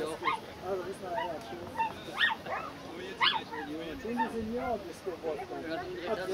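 A dog barking in short, high yips, the two loudest about two seconds in and a second later.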